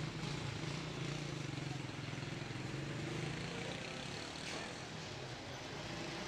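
Street noise with a motor vehicle engine running steadily and voices in the background.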